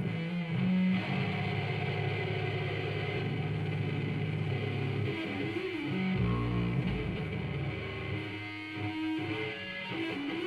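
Live rock band playing, led by electric guitars with bass guitar. The low notes shift about six seconds in.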